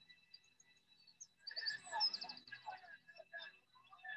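Faint birdsong, chirps and a quick trill, coming in about a second and a half in after near silence.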